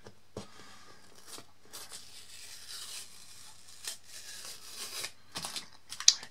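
Paper artist tape being peeled slowly, at an angle, off the edge of a dried fiber-based photographic print: a faint crackling tear with a few small ticks.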